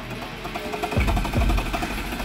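Fiat Ducato motorhome engine being jump-started: the starter cranks with a rapid clatter, and the engine catches about a second in and runs unevenly, starting at the first attempt on borrowed battery power after its own battery had failed to start it.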